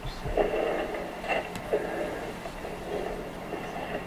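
The soundtrack of old camcorder footage played back over a loudspeaker in a room. It is muffled and uneven, with a faint steady whine running through it.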